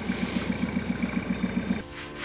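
Fishing boat's diesel engine idling with a steady throb of about ten pulses a second. Theme music cuts in abruptly near the end.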